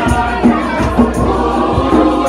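Youth choir singing over a steady beat of about two low thumps a second.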